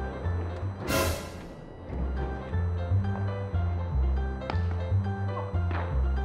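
Background music with a repeating bass line and pitched notes, with a loud rush of noise, like an editing swoosh, about a second in and two shorter ones near the end.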